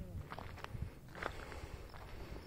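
Footsteps of a person walking on dry, gritty ground: irregular crunches and knocks, with phone-handling rumble underneath.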